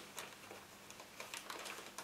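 Mostly quiet, with a few faint, scattered clicks of hard plastic being pushed and worked by hand into a fuel line's quick-connect fitting.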